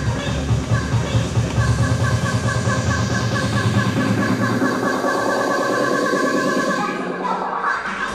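Electronic dance music mixed live on DJ decks: a steady pulsing beat, then the bass drops away from about halfway through, with a sweeping sound near the end, and the full bass comes back in right at the end.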